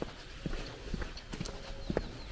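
Footsteps of shoes on asphalt pavement at a steady walking pace, about two steps a second.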